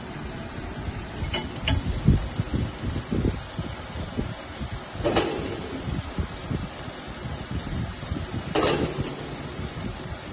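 Handling noise of bolts and a steel attachment frame being fitted together: uneven low knocks and bumps, with two short rushing noises about five and eight and a half seconds in.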